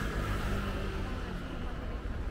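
Busy city street ambience: a crowd of pedestrians and distant traffic over a steady low rumble.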